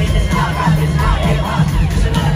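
Live band music over a large PA with heavy bass, and a crowd shouting and cheering over it.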